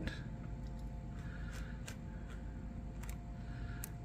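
Faint scraping of a plastic palette knife spreading glitter gel across a plastic stencil, in two soft strokes with a few light clicks, over a low steady room hum.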